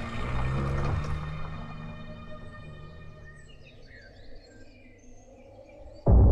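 Background score fading out over the first few seconds, leaving outdoor ambience with birds chirping in short, scattered calls.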